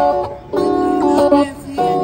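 Live music: an electric guitar playing the song's chords and melody, its notes changing every fraction of a second.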